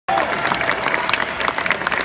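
A large concert audience applauding: a dense, steady patter of many hands clapping.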